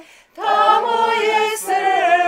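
Small group of mostly women's voices singing a cappella in a folk style. The singing breaks off for a breath just at the start and comes back in about half a second in, with long held notes.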